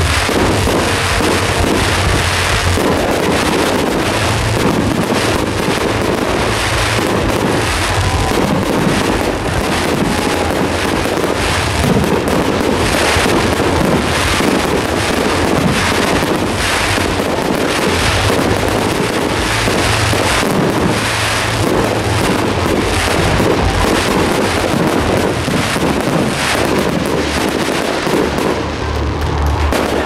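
Fireworks display: a dense, continuous barrage of bangs and crackling as shells burst overhead.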